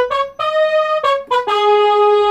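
Electronic keyboard set to a sustained brass-like voice, playing a single-line melody: a few short notes, then a longer held lower note in the second half.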